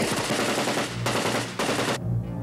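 Rapid automatic gunfire, a loud continuous burst that breaks off briefly about a second and a half in and then starts again.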